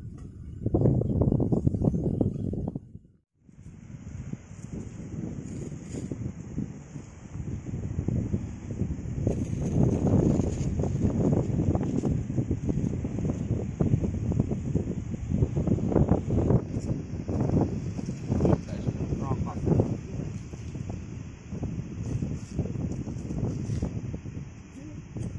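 Wind buffeting the microphone outdoors: an uneven low rumble with a steady high hiss above it. The sound cuts out briefly about three seconds in.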